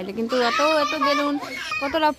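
Children's voices calling out and chattering excitedly at play.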